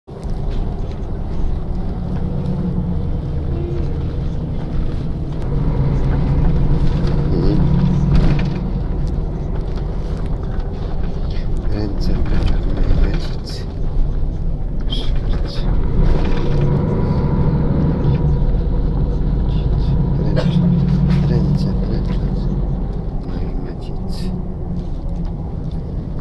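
Continuous rumble of a vehicle driving through city traffic, heard from inside, with a faint steady whine over it.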